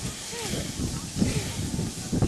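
Background chatter of children's and adults' voices, with a short rising-and-falling call about half a second in.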